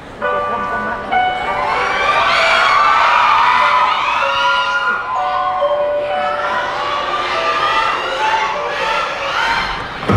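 The slow intro of a K-pop song plays over stage speakers, with sustained held chord notes. Over it, many audience voices scream and cheer in high, rising and falling cries.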